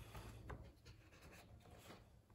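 Faint handling of a picture book's pages being opened and turned on a desk: a soft paper rustle with a few light ticks, the clearest about half a second in.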